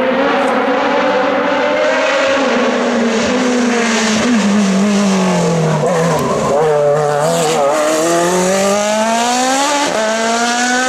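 Racing engine of an open-cockpit sports prototype hillclimb car, loud and close: its pitch falls as the car slows for a hairpin, wavers through the bend, then rises steadily as it accelerates away on the exit.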